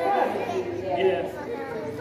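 Indistinct voices talking: chatter, with no clear words.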